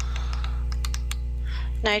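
A handful of quick, irregular computer key clicks over a steady low electrical hum, as the slides are stepped back one after another.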